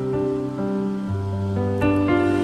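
Digital keyboard playing held chords, with a new chord struck about a second in and another near the end.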